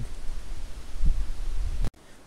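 Wind buffeting the microphone: a loud, uneven low rumble with a faint hiss, cutting off abruptly near the end.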